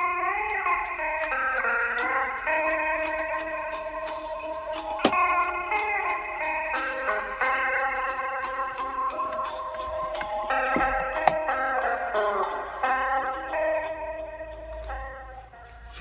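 Music from a cassette playing on a 1983 Philips D6620 mono portable recorder through its small built-in speaker. The pitch wavers and sags in places, clearest in the first two seconds, with two sharp clicks about five and eleven seconds in. The unsteady playback is put down to worn-out drive belts, and maybe an old motor.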